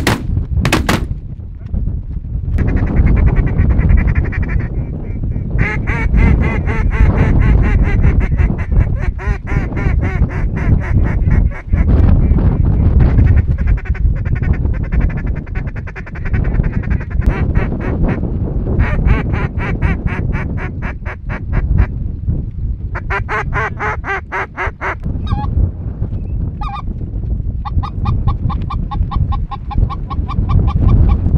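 A shotgun shot about a second in, then long runs of fast, rhythmic goose honking and duck quacking over a steady low rumble.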